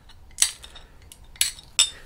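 Wheeled glass nippers biting small bits off the edge of a stained glass piece to trim it to a curve: three short sharp snaps, about half a second in, then twice near the end, with light clinks of glass.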